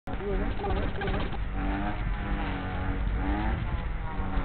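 A person's voice over a steady low rumble.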